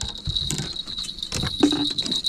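Light knocks and clatter of fishing gear being handled on a boat as a landing net is worked, over a steady high-pitched tone that runs throughout.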